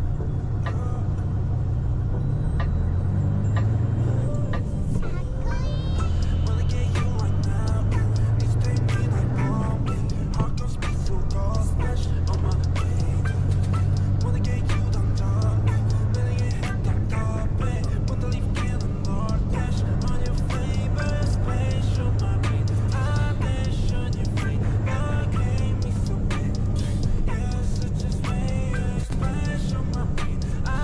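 Steady low drone of a truck's engine heard from inside the cab while driving, overlaid from about four seconds in by background music with a steady beat.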